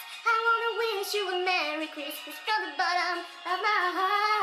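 A woman singing a slow, drawn-out melody, holding long notes and sliding between them.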